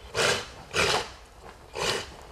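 Sharp, forceful exhalations of a karateka performing a kata, one burst of breath with each technique: three short breaths, the first two about half a second apart and the third about a second later.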